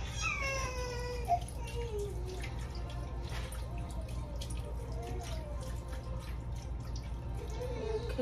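Chicken broth pouring from a carton into a slow cooker full of vegetables, with faint splashing, over a steady low hum. Several drawn-out, high vocal calls that fall in pitch sit on top, loudest in the first two seconds.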